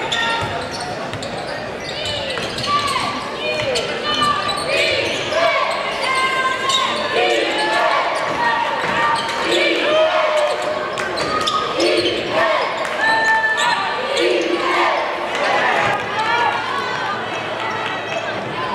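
Basketball game sound on a hardwood court in a large arena: a ball being dribbled and many short sneaker squeaks, over crowd and bench voices.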